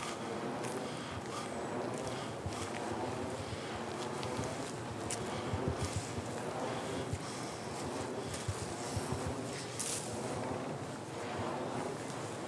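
Footsteps on leaf litter and dry ground, with scattered small clicks and knocks, over a steady hiss of wind.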